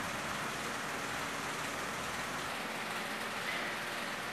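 Steady, even background noise with a faint hum, with no distinct events.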